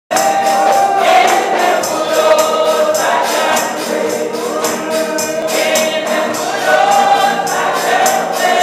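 Many voices singing a gospel song together in sustained, held lines, with a tambourine keeping a steady beat of several strokes a second.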